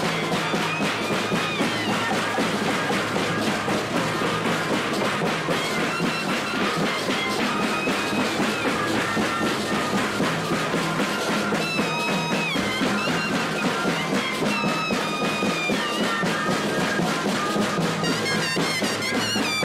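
Moseñada band playing live: a massed chorus of moseño cane flutes carries a sliding melody over big bass drums beaten in a steady rhythm.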